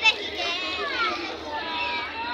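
Children's voices calling and chattering, high-pitched, with a short loud shout right at the start.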